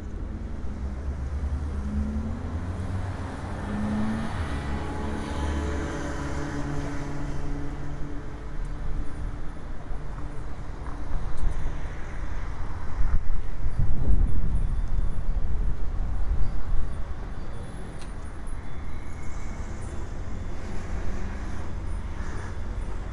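City street traffic in binaural audio: vehicles running by with a steady low rumble. The sound swells to its loudest about fourteen seconds in as one passes close.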